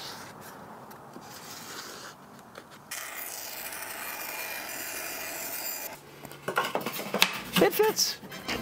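A felt marker scratching over cardboard and plywood while tracing a template. About three seconds in, a thin-bladed bench saw runs steadily for about three seconds, cutting thin plywood along the traced line.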